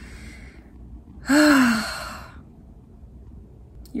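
A woman's deep, tearful sigh: a faint breath in, then a loud breathy exhale about a second in, with a brief voiced rise and fall in pitch, trailing away.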